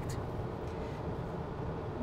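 Steady road and tyre noise heard inside a Subaru Forester's cabin while it drives at freeway speed.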